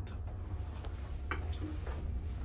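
Low steady hum in a lift car, with a few light clicks about a second in and near the end.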